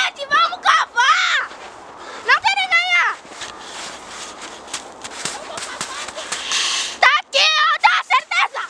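A young girl's high-pitched voice in three short spells of calls or exclamations without clear words. Between them comes a stretch of scraping and crunching snow as she digs into it with gloved hands.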